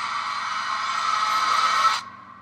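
Movie trailer soundtrack: a sustained, high drone that slowly swells louder, then cuts off abruptly as the trailer goes to black.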